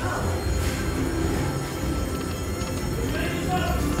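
Aristocrat Dragon Cash Golden Century slot machine playing its game music through a reel spin.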